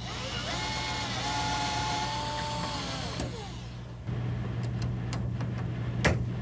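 Cordless drill driving a screw through a metal L-bracket into the wall: the motor whine rises as it spins up, holds steady for about two and a half seconds, then winds down about three seconds in. A few faint clicks follow.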